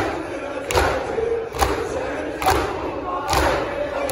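A large crowd of men beating their chests in unison during maatam: four strikes come together in a steady beat, a little under one a second. A mass of crowd voices carries on underneath.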